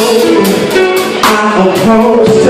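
A live band playing: keyboard, guitar and drum kit, with regular drum and cymbal strokes through the music.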